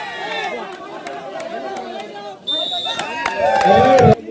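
Crowd of kabaddi spectators shouting and chattering, many voices over one another. About halfway through a brief high steady tone cuts in, and the loudest part is a held tone near the end.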